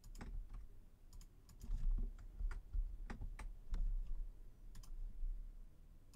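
Computer keyboard keys and mouse buttons being pressed in irregular taps and clicks, some with a dull low thud.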